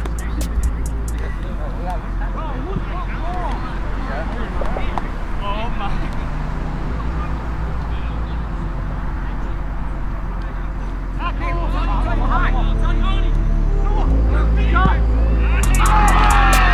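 Background music with a steady low bass line, mixed with scattered voices calling out on the field; it grows louder from about twelve seconds in.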